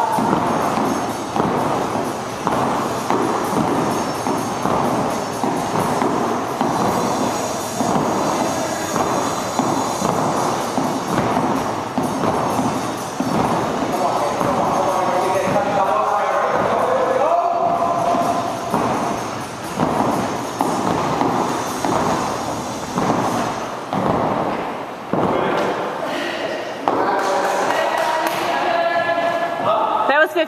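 A thick, heavy jump rope slapping a wooden floor in a steady rhythm, with the jumper's feet thudding down, against background music and voices in a gym.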